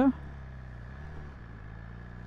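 BMW S1000RR's inline-four engine running at low revs, a steady low note with a slight rise and fall in pitch a little past a second in.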